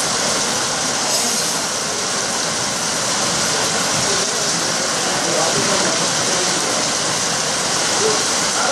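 A loud, steady rushing noise with no breaks, mostly a high hiss.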